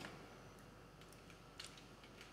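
Near silence: room tone with a few faint, short clicks in the second half, like small handling noises.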